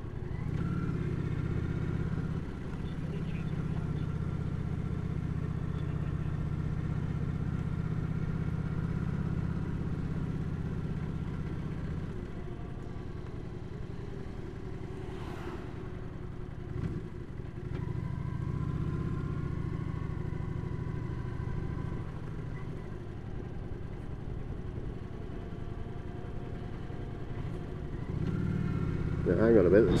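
Motorcycle engine running steadily at road speed, heard from the bike itself. The engine note eases off about twelve seconds in, picks up again a few seconds later, and eases once more.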